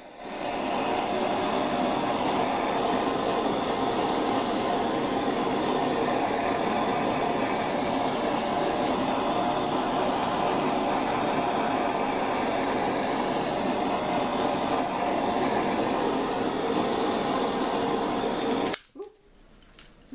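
Handheld torch flame burning steadily on its minimum setting, a loud, even rushing hiss played over wet acrylic paint to bring up cells. It cuts off suddenly near the end with a click.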